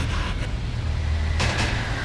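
Trailer sound design: a loud, steady low rumbling drone, with a noisy swell rising over it about one and a half seconds in.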